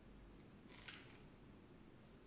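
Near silence, with one faint short click a little under a second in: snooker balls striking each other on the table.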